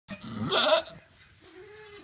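Goat doe in labour, with the birth sac emerging, bleating: one loud, wavering bleat, then a fainter, lower, held call about a second and a half in.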